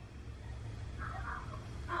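A car rolling slowly up a driveway, a low steady rumble, with a brief faint higher-pitched sound about a second in.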